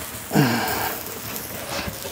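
A man's short grunt, falling in pitch, about half a second in, over a steady hiss of rain. A light knock near the end.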